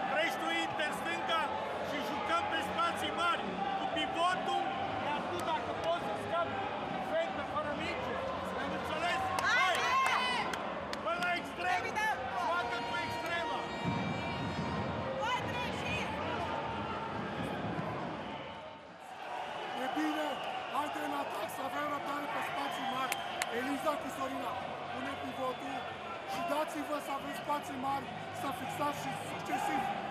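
Handball coach's voice giving instructions to his players in a team huddle, over the echoing background noise of a sports-hall crowd.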